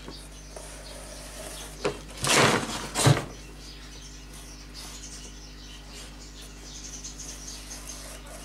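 Felt-tip marker squeaking and scratching faintly as a line is drawn on the side of a garbage can, broken about two seconds in by a loud scrape and a thump as the can is rolled over to a new position.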